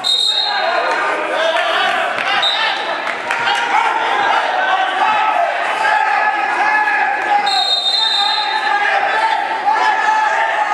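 Referee's whistle in a wrestling bout: a short blast right at the start and a longer blast about seven and a half seconds in, the whistles that stop the action and then restart it from neutral. People are calling out throughout.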